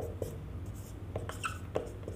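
Marker pen writing on a whiteboard: a quick series of short strokes and taps of the felt tip as words are written.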